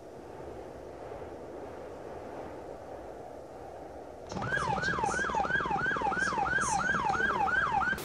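A low steady rumble, then about four seconds in an emergency-vehicle siren starts in a fast yelp, its pitch rising and falling about three times a second.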